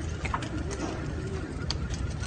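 Pigeons cooing in a short series of low, rising-and-falling calls, over a steady low outdoor rumble, with a few sharp clicks.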